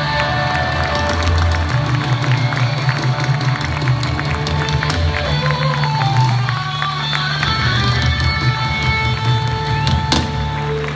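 Rock band playing live through a large concert sound system, heard from among the audience, with heavy bass, steady drumming and sustained held notes.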